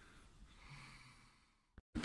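Near silence: a faint soft breath over room hiss, then dead silence with a single short click near the end.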